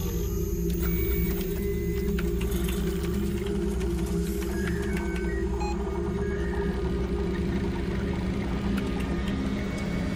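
Steady low hum of running computer equipment, with scattered short electronic beeps and ticks as text comes up on a terminal screen.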